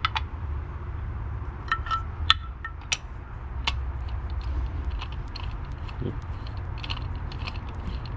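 Scattered small metallic clicks and clinks of a socket on a long extension, turned by hand to snug down the knock sensors in the block valley of an LS V8. They sound over a steady low background rumble.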